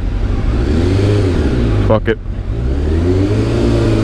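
Sportbike engine revved up and eased off twice, its pitch rising and falling each time.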